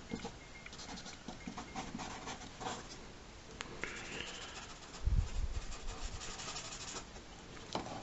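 Sharpie marker scratching across paper in quick, short strokes as dark areas are filled in. A dull low thump about five seconds in.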